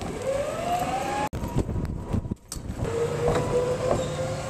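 Golf cart motor whine rising in pitch as it speeds up, cut off suddenly about a second in; after a short gap a steady whine with a low rumble as the cart drives along.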